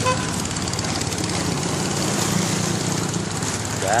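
Long-tail boat engine running steadily on the river, a low hum with a noisy wash over it.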